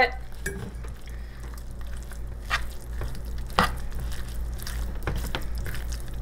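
Metal spoon stirring a moist mix of pulled pork, taco seasoning powder and water in a stainless steel saucepan, with irregular scrapes and clinks against the pan.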